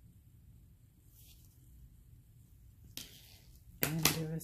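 Quiet room tone with no distinct working sounds. A short breathy noise comes about three seconds in, and a voice starts right at the end.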